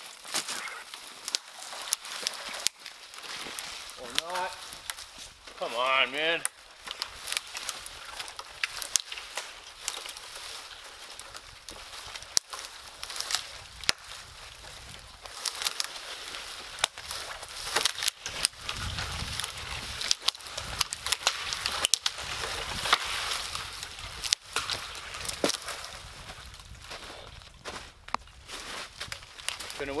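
Dry dead wood cracking and crackling in irregular short snaps, with boots crunching in snow, as a dead tree is wrestled down by hand. Two brief vocal sounds come about four and six seconds in.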